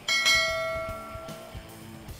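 A bell-like 'ding' sound effect for a clicked notification-bell icon, struck once and ringing out for about a second and a half, over quiet background music.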